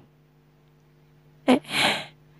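A man's voice gives a short, sharp 'eh' about one and a half seconds in, followed at once by a breathy huff of air, a storyteller's vocal reaction. Before it only a faint steady electrical hum is heard.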